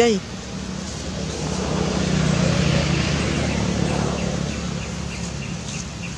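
A motor vehicle passing, its hum swelling to a peak in the middle and fading away toward the end. A short voice sounds at the very start.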